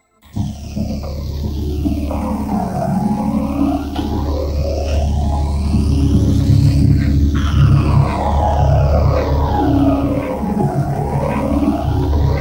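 TV commercial soundtrack run through heavy audio effects: dense, bass-heavy and distorted music with sweeping tones rising and falling over and over across the high end. It starts just after a brief silence at the very beginning.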